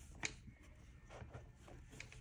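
Faint handling sounds of a paperback B6 planner being settled into a leather planner cover: one soft tap near the start, then light rubbing and rustling.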